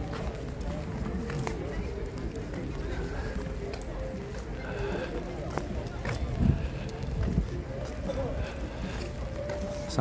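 Street ambience while walking on wet pavement: footsteps, murmuring voices of passers-by, and a steady low rumble on the microphone.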